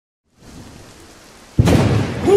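Thunderclap sound effect: a faint hiss, then a sudden loud crack of thunder about a second and a half in that carries on as a deep rumble.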